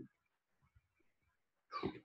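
A near-silent pause, then a short breathy vocal noise near the end, like a person drawing breath through the nose.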